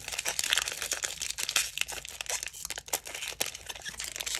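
Foil wrapper of a Panini Prizm football trading-card pack being torn open and peeled back by hand, with dense, irregular crinkling and crackling of the foil.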